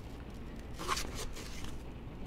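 Soft rustle of paperback book pages being handled and turned, rising to a brief swish about a second in.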